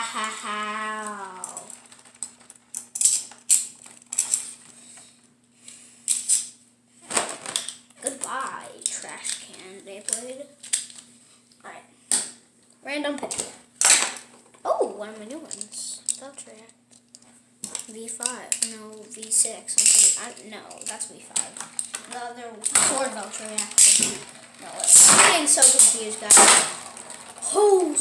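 Beyblade spinning tops clicking and clattering against each other and the plastic stadium, many short sharp knocks at uneven spacing, with a child talking and murmuring at times.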